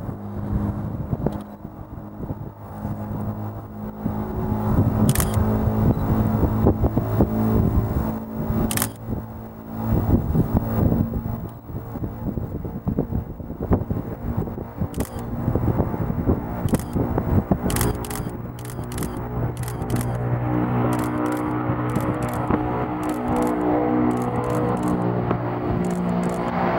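Antonov An-22's four turboprop engines with contra-rotating propellers, a steady low drone with overtones through the takeoff run and lift-off, broken by scattered sharp crackles and pops that are likely wind buffeting on the microphone.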